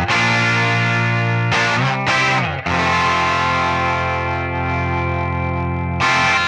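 1951 Fender Nocaster electric guitar played through a 1962 Fender Bandmaster amp. A chord rings for about a second and a half, then a few quick notes that slide in pitch, then a chord held and left to ring out slowly.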